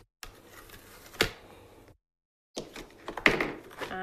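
Papercraft materials being handled on a tabletop: rustling and light tapping, with one sharp click about a second in. The sound cuts out to dead silence twice.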